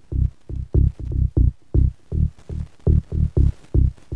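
Synth bass loop from the Transfuser 2 plug-in's bass presets playing: short, low, pitched bass notes in a steady rhythm of about four a second. Each note has a bright attack that quickly closes down to a dull low tone.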